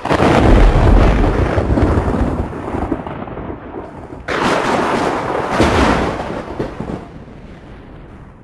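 Thunder sound effect: a loud crack and rumble that starts abruptly and rolls away over about four seconds, then a second clap about four seconds in that fades out.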